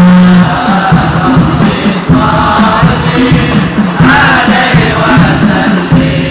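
A group of voices chanting devotional verses together in rhythm, led by a man singing into a microphone.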